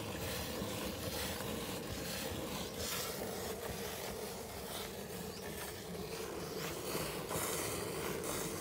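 Jets of milk squirting by hand from a water buffalo's teats into a steel bucket of frothy milk, a repeated hissing spray with each pull.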